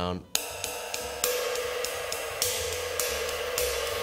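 Ride cymbal struck with a wooden drumstick in a swinging ride pattern, a ringing wash that sustains between strokes with one clear pitch. Accents come from striking the cymbal's shoulder rather than hitting harder.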